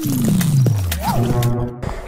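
News logo sting: a deep sound effect that slides down in pitch over about a second, with music.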